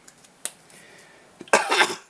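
A man coughs once near the end, a short loud burst, after a small click about half a second in.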